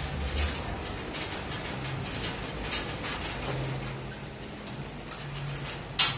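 Gym cable machine in use: the cables, pulleys and weight stack rattle and tick irregularly as the handle is pulled, with one sharp clank at the very end.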